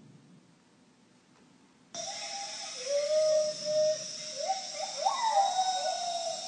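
Field recording of a gibbon singing in a jungle: after about two seconds of near silence the recording cuts in. It opens with a few long held notes, then a run of whooping calls that climb in pitch, over a steady high drone of insects.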